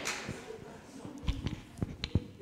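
A handheld microphone being handed over and gripped, giving several short low bumps in the second half, over faint fading room noise.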